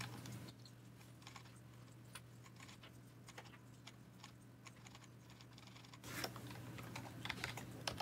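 Computer keyboard typing: faint scattered keystrokes that grow denser and louder from about six seconds in, as a text formatting tag is keyed into a label.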